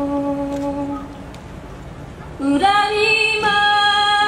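A woman's singing voice in a slow Japanese ballad, holding a long note that fades about a second in; after a short quieter stretch a louder held note rings out about two and a half seconds in.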